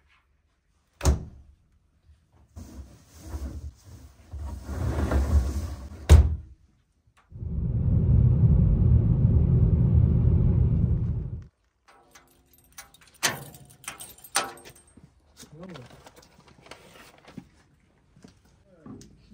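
Household door handling: a knock about a second in and a sharp click near six seconds. In between comes about four seconds of steady, even road noise from a car driving on a snowy highway, cut off suddenly. Then a few sharp clicks and small handling noises.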